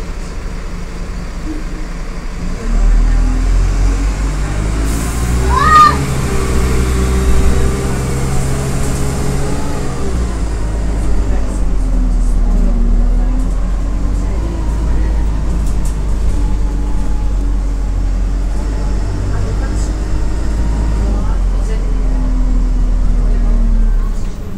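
Single-deck diesel bus engine running under load, its drone getting louder about three seconds in as the bus pulls away. A brief rising whine comes near six seconds, and the engine tone shifts as it goes through the gears.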